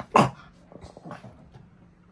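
Small Yorkshire terrier barking: one sharp, loud bark just after the start, closing a quick run of barks, then a few quieter short sounds about a second in.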